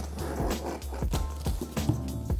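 Background music with a steady beat over the scraping and rustling of a cardboard box being opened, its top flaps pulled back.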